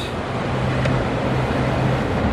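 Outboard motor of a cabin boat running steadily at speed, a low even engine drone under a wash of water and wind noise.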